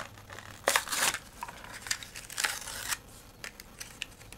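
Hands handling die-cast Hot Wheels toy cars: a few short scraping rustles and light clicks, spread out over a few seconds.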